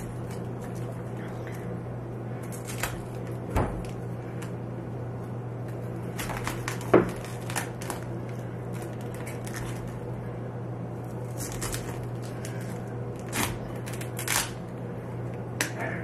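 A knife cutting the core out of a raw cabbage quarter and hands breaking off crisp cabbage leaves on a plastic cutting board: scattered short crunches and snaps, the loudest about seven seconds in, over a steady low hum.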